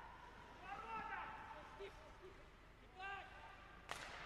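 Faint rink sound with distant voices, then the sharp crack of a hockey slapshot, stick striking the puck, near the end.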